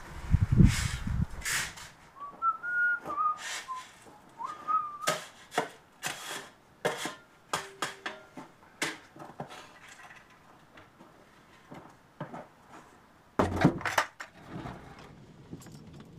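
A man whistles a few wavering notes, then a shovel scrapes and scoops anthracite rice coal in a run of short, sharp strokes. There is a low rumble at the start and a louder clatter near the end.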